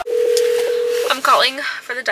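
A telephone tone heard over a phone's speaker as an outgoing call is placed: one steady note held for about a second that then stops, followed by a voice.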